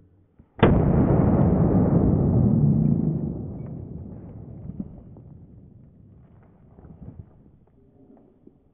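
A gunshot from a gun mounted on a knife, slowed down with slow-motion footage: a sudden deep boom about half a second in that rumbles on loudly for about two and a half seconds, then fades away slowly.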